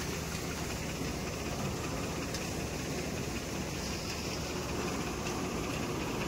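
Crop Star combine harvester running steadily, its engine and machinery making a continuous drone.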